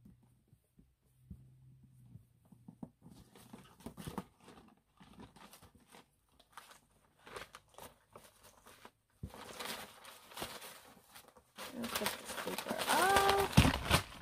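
Tissue paper rustling and crinkling as it is handled and lifted out of a cardboard gift box, louder from about nine seconds in and loudest near the end. Before that, faint clicks and taps of the box being handled, and a brief voiced sound near the end.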